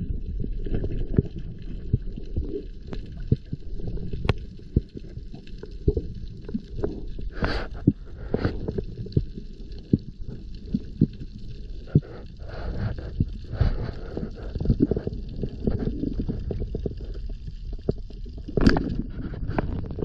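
Muffled underwater noise picked up by an action camera in its housing while a diver handles a speargun: a constant low rumble scattered with small clicks and knocks. There are three louder rushes, two in the middle and one near the end.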